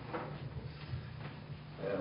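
Low steady hum through a pause in a speech at a lectern microphone, with a short soft handling noise just after the start; a man's voice resumes right at the end.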